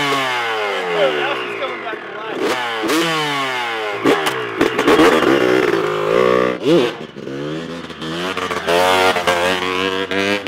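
Two-stroke motocross bike engine being revved in a string of quick throttle blips, each rising and falling in pitch. Near the end the revs climb as the bike pulls away under throttle.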